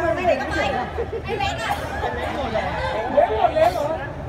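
Several people talking and calling out over one another: the chatter of players and spectators along the sideline of a football match.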